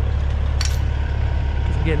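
Semi truck's diesel engine idling with a steady low rumble, and a brief metallic clink of gate chain and padlock about half a second in.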